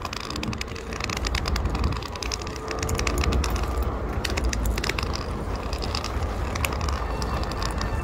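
Outdoor street noise: a steady low rumble of road traffic, with many quick clicks and rattles throughout.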